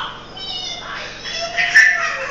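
Toddler squealing in high-pitched, meow-like cries, twice, the second one louder near the end.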